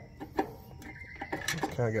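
A few sharp metal clicks of a flathead screwdriver working in the adjuster slot of a trailer's electric drum brake, the screwdriver tip catching on the backing plate and adjuster. The loudest click comes early, then a couple of lighter ones before a man starts to speak.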